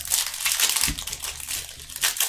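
Foil booster pack wrapper of a Magic: The Gathering Modern Horizons pack being torn open and crinkled by hand: a dense crackle of sharp crinkles, heaviest in the first second.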